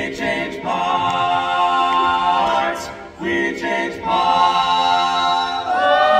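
Male barbershop quartet singing a cappella in four-part close harmony: held chords that break and move to a new chord every second or two.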